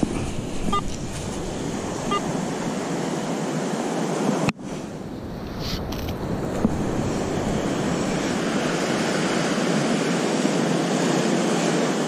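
Surf washing up the beach, a steady rushing noise mixed with wind on the microphone, with a brief dropout about four and a half seconds in.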